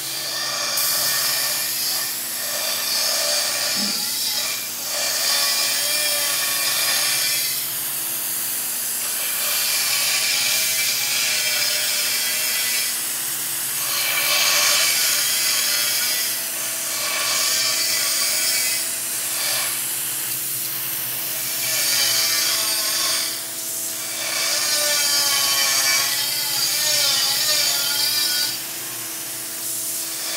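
Air-fed paint spray gun hissing as it sprays paint in passes across a car hood, the hiss dropping briefly every few seconds between strokes. A steady low hum runs underneath.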